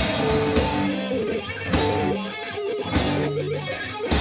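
Heavy metal band playing live: electric guitar riff with held notes while the drums drop back to two sharp accented hits a little over a second apart, with the full kit coming back in at the very end.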